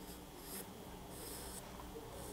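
Faint scratching of a pencil drawn across watercolour paper in a few short light strokes, the longest a little past a second in.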